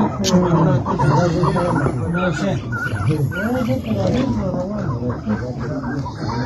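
Chukar partridges calling together, a continuous chorus of overlapping, rising-and-falling calls with no pause.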